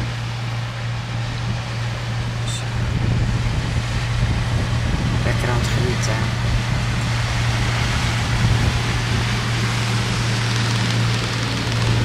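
Steady low drone of a motor yacht's engine under way, with a haze of wind and rushing water that grows louder about three seconds in.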